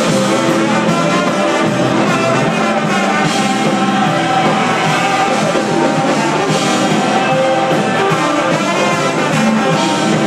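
Live band playing with a trombone leading over the horns, drums and guitars, loud and continuous.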